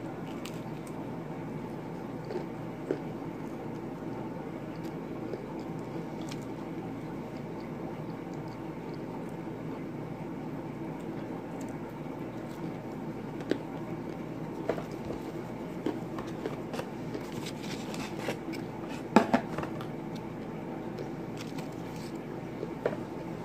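Close-up chewing of pizza: soft mouth clicks and smacks over a steady background hum, growing more frequent in the second half, with the loudest few smacks a few seconds before the end.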